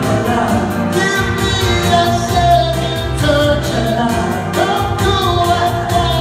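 Women's voices singing a soul-pop song through a PA over amplified backing music with a bass line and a steady beat.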